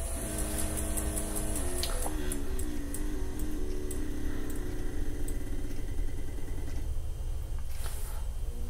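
Two electronic rifle-powder tricklers, an AutoTrickler V3 and a SuperTrickler, running side by side as they meter powder onto their scales toward a 56.4-grain charge. Their motors give a whine that steps up and down in pitch every half second or so, with faint ticking, as the charges near the target weight.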